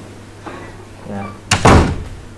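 A door banging shut about one and a half seconds in, a sudden loud thud with a short ring after it, over faint talk in a room.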